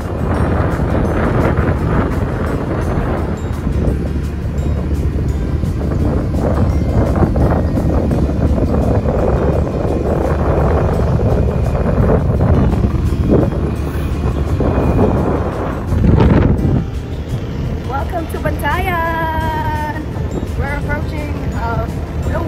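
Wind buffeting the microphone over a motorcycle's engine running at riding speed, with background music over it. Near the end a repeated rising-and-falling melodic figure stands out above the noise.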